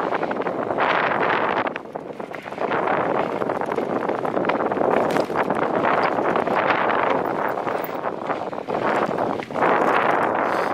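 Wind buffeting a handlebar-mounted camera's microphone as a mountain bike rolls along a dirt trail, with tyre crunch and frequent small rattling clicks from the bike. It eases briefly about two seconds in and again near the end.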